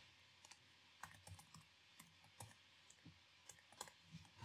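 Faint, irregular clicks of typing on a computer keyboard.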